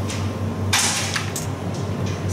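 Carrom striker sliding on the powdered wooden board in a short rushing scrape under the player's hand, followed by two light clicks of wood on wood, over a steady low hum.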